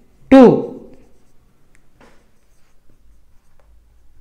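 A man says one word, then faint, scattered strokes of a marker pen writing on a whiteboard.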